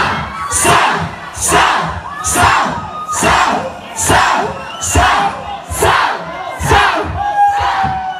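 Concert crowd shouting together in rhythm, about one shout a second, each with a low thump beneath it. Near the end a single held tone sounds over the crowd.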